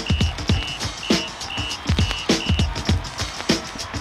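Music with a beat played from a vinyl record through a ceramic cartridge, fed straight into a homemade high-impedance phono preamp: deep kick drums about twice a second, and short high beeps repeating about every half second for the first two and a half seconds.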